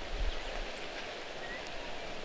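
Quiet outdoor ambience, a soft steady hiss, with one faint short bird chirp about one and a half seconds in.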